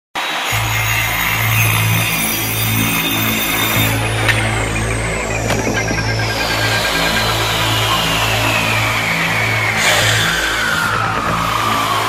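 Music with a repeating low bass line. From about four seconds in, a single high tone slides slowly and steadily down in pitch.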